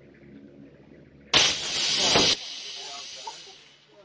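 A pressurised canister bursts as it is smashed: a sudden loud blast about a second and a half in, lasting about a second, then a hiss of escaping gas and powder that fades out over the next second and a half.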